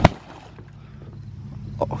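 A short sharp knock and splash as a small inflatable boat is shoved out onto pond water, followed by a low steady hum under faint water noise as it drifts.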